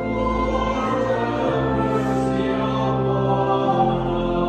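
Voices singing together with church organ accompaniment, in long held chords.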